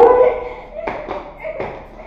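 A short cry with a rising pitch, then several quick sharp footfalls of a child running barefoot across a tiled floor.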